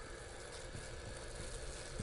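Faint, steady hiss of pressurised water jets spraying from two water-fed pole brushes.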